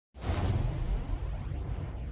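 Sound-effect whoosh of flames flaring up, with a deep rumble underneath. It starts suddenly just after silence and slowly dies away.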